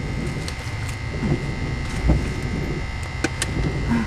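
Mail being pushed back into a metal roadside mailbox: paper rustling and small knocks, with two sharp clicks a little after three seconds in, over a steady low rumble.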